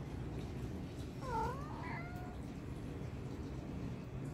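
A kitten mewing: one short call a little over a second in that dips and then rises in pitch, followed by a fainter, shorter call.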